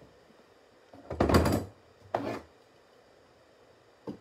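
Two muffled thuds against a drywall wall as a map pin is pressed through a hooked wool rug, the first about a second in and louder, the second about a second later.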